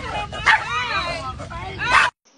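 Small dog yipping and whining in a string of high-pitched calls as it lunges at a bag of fries, loudest near the end, with people's excited voices mixed in.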